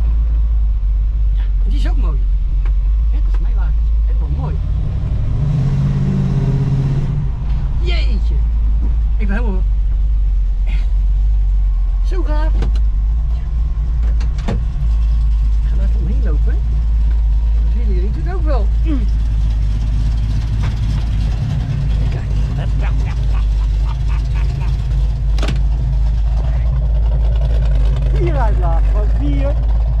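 A 1974 Dodge Challenger's engine running, heard from inside the cabin as a steady deep rumble, with a short rise in revs about six seconds in.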